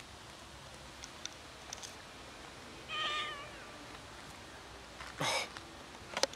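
A kitten meows once about halfway through, a short high-pitched call that dips slightly in pitch, with a few faint ticks before it. A little after five seconds comes a short, louder burst of noise.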